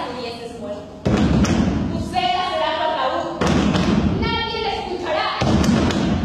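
Three heavy thuds on a stage, about a second in, halfway through and near the end, each with a dull, low rumble lasting about a second, over actors' voices.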